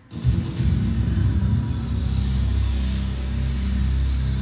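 Instrumental backing track with a heavy bass line, played over the rehearsal room's speakers, with no vocals over it. It comes in just after a brief drop-out at the very start.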